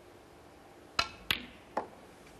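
Snooker shot: the cue tip clicks against the cue ball, and about a third of a second later the cue ball clicks sharply into the object ball, followed near the end by a softer, duller knock of a ball.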